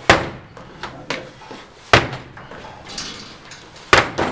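Hard kicks thudding against a metal-sheathed entry door, three heavy blows about two seconds apart. The last, at the very end, bursts the door open: the deadbolt holds but the door itself splits.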